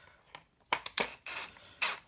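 A few sharp clicks and two short scrapes of a drill/driver bit and screw against a plastic caster mount, with no drill motor running.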